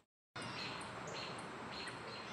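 Dead silence for a moment, then faint outdoor background hiss with a few distant bird chirps.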